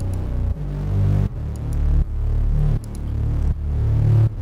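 Distorted electronic sub-bass playing on its own, pulsing in a repeating rhythm: each note swells and then cuts off sharply, about every three-quarters of a second. The pulse comes from a custom sidechain effect made with Gross Beat, and overdrive distortion roughens the low end.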